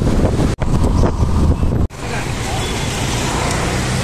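Wind buffeting the microphone and a scooter's engine running while riding on a moving scooter through traffic. After a cut about two seconds in, a steadier, quieter street-traffic noise follows.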